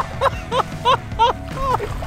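A man laughing in short repeated bursts, about three a second.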